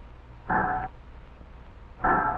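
Power metal shear cutting a strip of sheet metal: one short ringing clang about half a second in, over a low steady machine hum.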